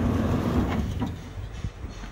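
Low rumbling noise with a few light knocks, loud at first and easing off after about a second, from a handheld camera being carried through a building.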